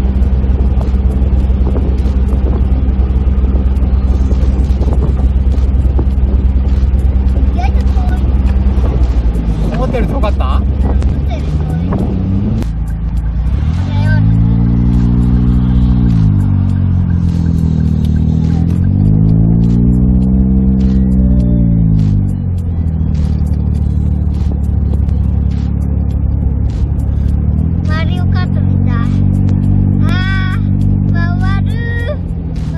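Daihatsu Copen XPLAY's small three-cylinder turbo engine heard from the open cockpit with wind and road noise, droning steadily at cruise. Through the middle its note rises and falls several times as the car speeds up and slows, then it settles back to a steady drone.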